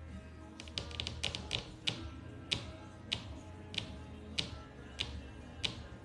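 Light, sharp clicks of someone working a computer: a quick run of them about half a second in, then single clicks roughly every two-thirds of a second. Soft background music plays underneath.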